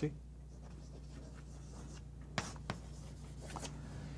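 Chalk tapping and scratching on a chalkboard as a line is written, with two sharp taps about two and a half seconds in and lighter strokes after, over a low steady hum.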